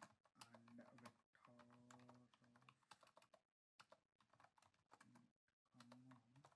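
Very faint typing on a computer keyboard: a scatter of soft, irregular key clicks.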